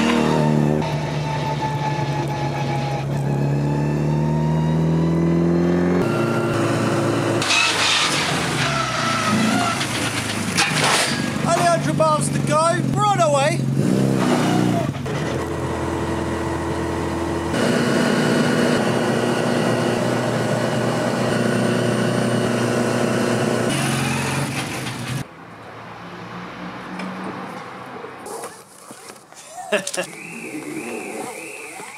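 Classic Mini's engine running on the road, rising in pitch as it pulls away and later holding a steady cruising note. A short wavering, warbling pitched sound comes through in the middle, and near the end it all drops much quieter.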